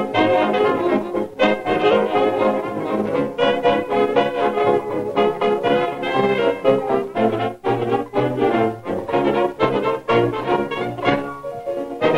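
Background music led by brass instruments, such as trombone and trumpet, playing a continuous tune.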